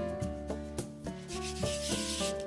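A hand rubbing flour across a bamboo cutting board, a dry swishing mostly in the second half, over background music with a steady run of notes.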